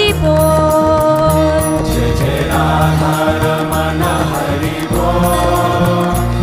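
Devotional music: a chanted mantra sung in long held notes over a low repeating bass.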